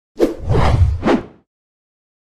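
Motion-graphics whoosh sound effects: two quick swooshes, the first with a low boom under it, together lasting about a second.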